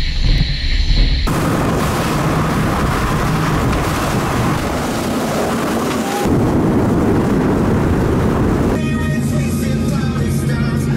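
High-performance powerboats running at speed: a loud engine rumble mixed with the rush of wind and water. The sound changes abruptly about a second in, again near six seconds and again near the end. In the last part the engine drone is steady and has a clear pitch.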